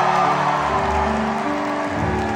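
Live band holding sustained chords that shift twice, with an audience cheering underneath.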